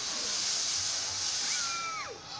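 Steady high hiss of air from the Slingshot ride's pneumatic system while the riders sit strapped in, cutting off sharply. A short falling squeal comes near the end.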